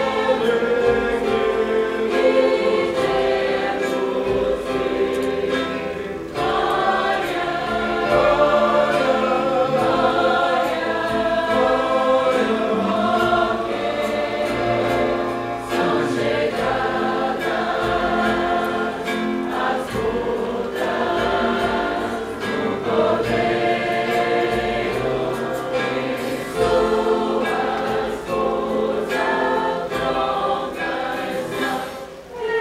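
Many voices singing a worship song together, a congregation in group song, in sustained phrases with short breaks between lines.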